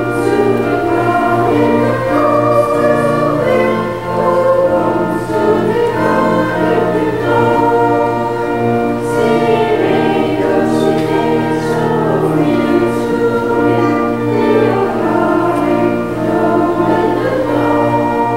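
Choir and congregation singing a hymn in Pennsylvania Dutch to organ accompaniment, with held organ chords under the voices.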